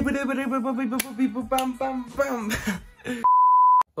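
A high-pitched, wavering voice-like sound, then a steady electronic beep tone lasting over half a second near the end.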